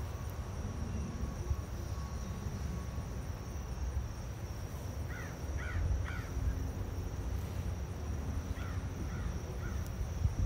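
A bird calling outdoors: three short calls in quick succession about five seconds in, then three fainter ones near the end, over a steady low rumble.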